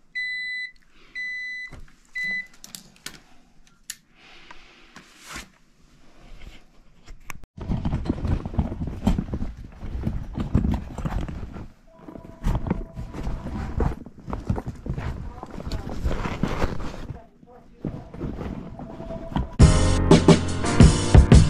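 A Fieldpiece clamp meter beeps three times at a steady high pitch in the first two seconds or so, followed by a few clicks. Then comes a long stretch of loud rustling and knocking handling noise close to the microphone.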